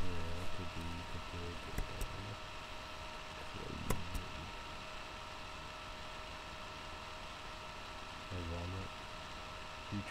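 A man's voice in short low phrases with long pauses, over a steady hum and hiss; a single sharp click about four seconds in.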